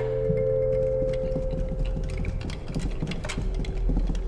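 Background film score: a few held tones fade away over a low steady drone, with scattered light taps.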